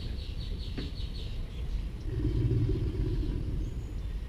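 American alligator bellowing: one deep, low rumble swelling up about two seconds in and lasting nearly two seconds, a breeding-season call. A bird's rapid chirping runs through the first second or so.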